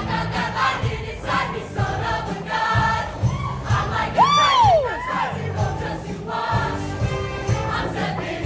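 Show choir singing in full chorus over instrumental accompaniment with a steady beat. About four seconds in, one loud voice glides up and back down in pitch.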